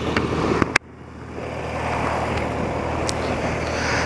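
Old BMW motorcycle riding along a wet road: a steady low engine hum under wind rush and tyre hiss, with a few sharp clicks in the first second. The sound cuts off abruptly just under a second in, and the wind and road noise then build back up gradually.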